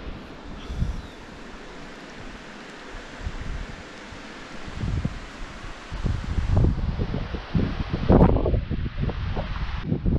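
Wind buffeting the camera microphone over a steady hiss, the low rumbling gusts growing much stronger about six seconds in, with a few sharp knocks of handling among them, the loudest a little after eight seconds.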